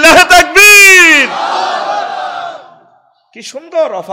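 A preacher's amplified voice gives a loud, drawn-out shout of about a second that falls in pitch at its end. A crowd's answering shout follows and fades out over about a second and a half. He starts speaking again near the end.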